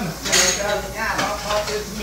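Dishes and cutlery clattering in a kitchen sink as they are rinsed under a running tap, with a sharp clink about a third of a second in.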